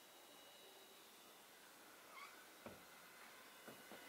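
Near silence: room tone, with a faint short squeak that bends in pitch about two seconds in and two soft clicks later on.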